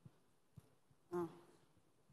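Quiet hall room tone with a few faint clicks, broken about a second in by a brief spoken "Oh".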